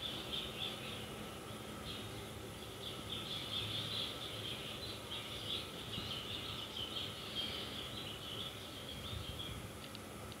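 Faint high-pitched chirping that runs on without a break in the background, irregular and patchy, over a faint steady hum.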